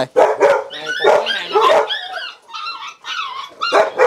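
Dogs barking in quick succession: many short, loud barks and yips, several a second and partly overlapping, with brief lulls after the middle.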